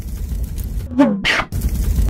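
A brief non-speech human vocal sound about a second in, falling in pitch and ending in a breathy rush, over a steady low rumble.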